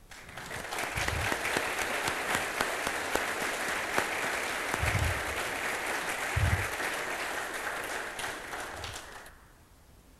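Audience applauding in a large hall, starting just after the start and dying away near the end, with a few dull low thumps under the clapping.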